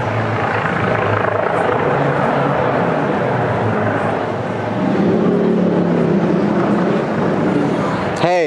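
A motor engine running steadily, a low even hum that changes pitch and grows slightly louder about five seconds in.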